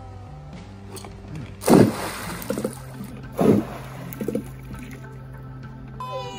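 Golf balls dumped into pool water: two loud splashes about a second and a half apart, each followed by a smaller cluster of splashes. Background music plays underneath.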